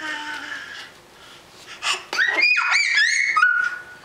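Toddler's high-pitched squeals: after a short softer vocal sound, a quick run of rising-and-falling squeals starts about halfway in and ends on a held high note.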